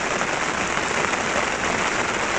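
Heavy rain falling steadily during a summer thunderstorm, an even hiss of drops.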